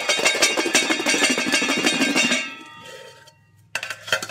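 Garlic rattling rapidly inside two stainless steel mixing bowls held rim to rim and shaken hard, knocking the papery skins off the cloves. The shaking stops about two and a half seconds in and the bowls ring on briefly, then a few metal clinks near the end as the bowls are parted.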